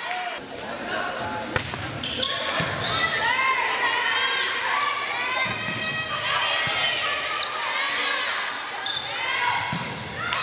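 Indoor volleyball rally on a hardwood gym court: a sharp smack of the ball about one and a half seconds in, then more ball contacts among short squeaks and players' shouts, echoing in the large gym.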